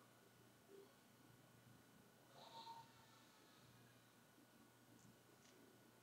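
Near silence: room tone, with a faint short sound about halfway through and two faint ticks near the end.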